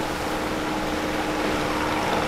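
Seaside ambience: a steady wash of surf on a beach, with a faint steady hum underneath.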